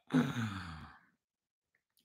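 A man's voiced sigh, falling in pitch and lasting under a second.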